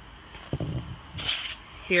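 A pause in a person's speech holding only a few faint, brief noises, with speech resuming near the end.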